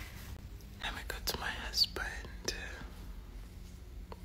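Soft whispered speech from about a second in until near three seconds, with a few small clicks among it and a faint steady hum underneath.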